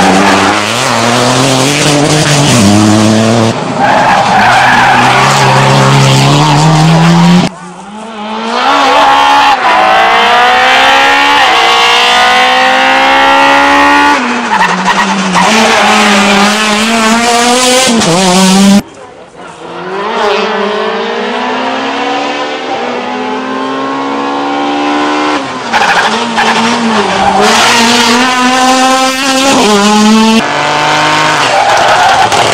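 Rally cars at full race pace, one after another, engines revving hard and changing up through the gears, the pitch climbing and stepping down at each shift. The sound breaks off abruptly twice as one car gives way to the next.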